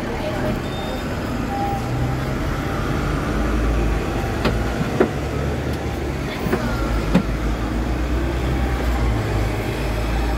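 Steady low rumble of a road vehicle heard from on board, with a few sharp knocks, the loudest about halfway through.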